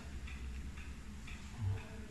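Faint, scattered clicks of a small metal clamp being turned over and worked in gloved hands.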